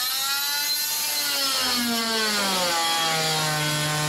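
Whine of an electric power tool's motor. Its pitch sinks over the first two to three seconds, as under load, then holds steady.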